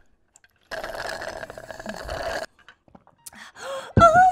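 Slurping a drink through a straw from a plastic tumbler: one continuous noisy suck lasting about two seconds, starting under a second in.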